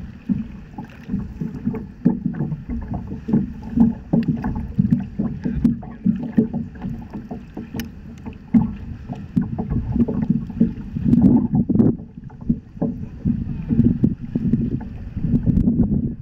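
Water slapping and lapping against the hull of a paddle board as it is paddled along, an uneven low sloshing with frequent small surges, mixed with the splash of paddle strokes.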